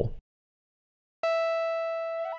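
A single held note from the Thor synthesizer in Reason, played on a multi oscillator pitched two octaves up. It starts a little over a second in and holds one steady pitch, fading slowly.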